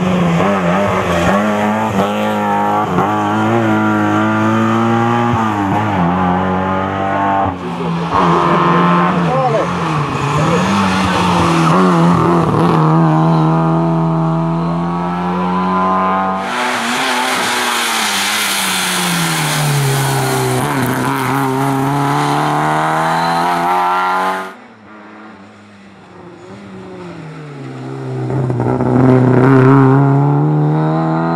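Lada 2105 rally car's engine revving hard, its pitch climbing and falling through gear changes and corners. The sound breaks off and restarts a few times. From about the middle to two-thirds through, a harsh hiss lies over the engine. After a brief drop near the end, the engine grows louder again as the car comes closer.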